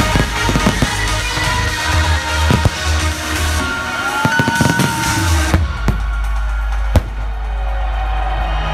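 Loud electronic dance music over a festival sound system, with aerial fireworks shells going off: several bangs in the first five seconds, then the music's treble drops away about five and a half seconds in and a single sharp bang comes near seven seconds.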